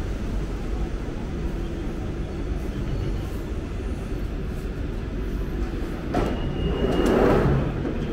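London Underground Central line 1992-stock train pulling into the platform with a steady low rumble and coming to a stop. About six seconds in there is a short high beep and a loud rush of noise as the doors slide open.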